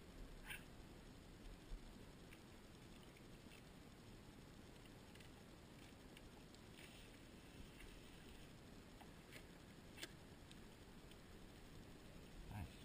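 Near silence: a faint steady background with a few soft scattered clicks and taps from a fillet knife working a sockeye salmon on a cleaning table.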